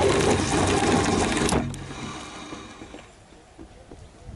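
Fishing line paying out off the reel and through the rod guides during a short cast, heard from right on the rod: a fast whirring buzz for about a second and a half, then a click, then dying away.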